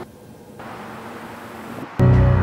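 Steady background noise, an even hiss with a low rumble and no distinct event.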